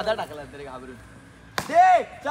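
Cricket bat striking the ball once, a sharp hit about one and a half seconds in, followed at once by a loud shout.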